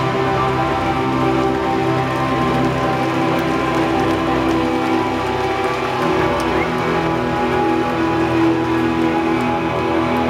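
Indie rock band playing live in a small room: an instrumental stretch with no singing, guitars holding steady ringing chords over the bass.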